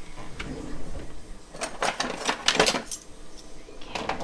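Kitchen utensils clinking and knocking against each other on the counter: a quick run of sharp clicks and clinks starting about a second and a half in and lasting about a second.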